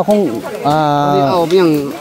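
A man speaking, with one long drawn-out vowel in the middle.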